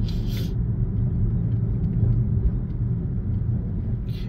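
Steady low road and engine rumble inside a car's cabin while it cruises on a freeway.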